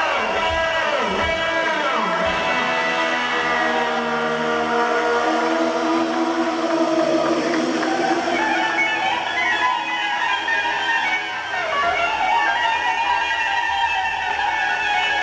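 Live rock band playing loudly, an electric guitar leading with sliding, bending notes at first, then held notes, over bass and drums.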